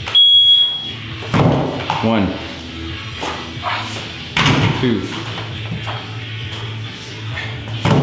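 One long, high electronic beep from a gym interval timer right at the start, the long last note of a short-short-long countdown. Then dumbbells thud twice, about three seconds apart, as they are set onto a bumper plate on top of a wooden box, over background music and counting.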